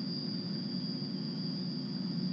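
Steady low hum with a thin, steady high-pitched whine over it: background line noise on a Skype video-call audio feed.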